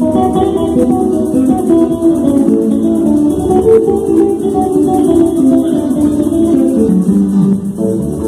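A live joropo played on a Venezuelan cuatro and electric bass with hand percussion: a fast run of strummed and plucked cuatro notes over a steady bass line.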